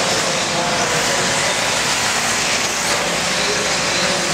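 Steady din of electric 1/8-scale RC buggies running on an indoor dirt track, motors and tyres on the dirt blending with the echo of the hall.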